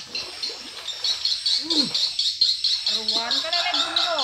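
A bird chirping in a fast, even series of short high notes, about five a second, with voices briefly calling out near the end.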